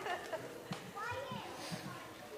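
Children's voices and chatter in a large hall, short indistinct calls and murmurs with a few light knocks.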